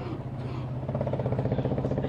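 An engine running steadily, a low hum pulsing at a fast, even rate.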